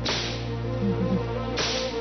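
Two whip lashes in a flogging, one at the start and one about a second and a half in, over sustained background music.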